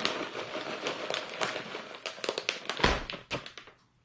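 Plastic bag of shredded cheddar cheese crinkling as it is shaken out into a stainless steel bowl, with a thump just under three seconds in, then quiet.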